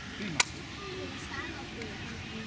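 A man's voice says a short word, with children's voices in the background, and a single short sharp click about half a second in.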